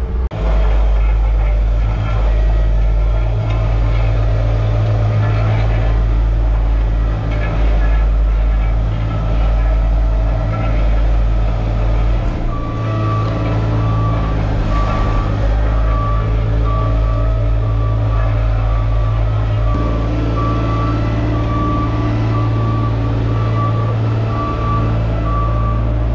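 Diesel engines of heavy plant running steadily, a Hamm HD 12 vibratory roller compacting crushed concrete among them. From about halfway through, a reversing alarm beeps steadily.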